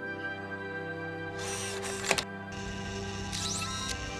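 Sustained background film score with sound effects over it: a hiss about a second and a half in that lasts about a second, a sharp click about two seconds in, and short gliding electronic tones near the end.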